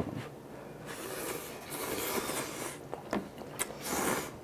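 Instant ramyeon noodles being slurped, a rushing slurp lasting about two seconds, followed by a few light clicks near the end.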